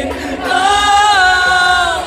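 A female rock singer singing live over the band through a concert PA, holding one long note that slides down at the end.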